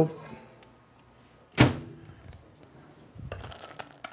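A microwave door shutting with a single sharp thunk, about one and a half seconds in, followed near the end by faint handling noise.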